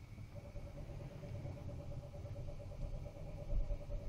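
Faint, steady low rumble of a distant idling engine, with a thin steady hum that comes in about half a second in.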